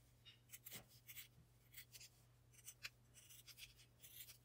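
Faint, irregular snips of small scissors cutting through folded fabric and a paper template.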